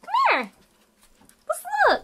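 Small shaggy dog whining in two short pitched whines: the first drops steeply in pitch right at the start, the second rises and then falls near the end. They are its vocal protest while being scolded for eating trash.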